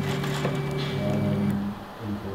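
Stepper motors of a RepRap 3D printer whining at steady pitches that shift as the print head changes moves, the tones falling away about a second and a half in.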